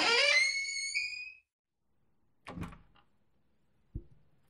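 A pitched tone glides upward and fades out in the first second and a half. After a silence comes a single dull thud about two and a half seconds in, then a short sharp knock at the very end.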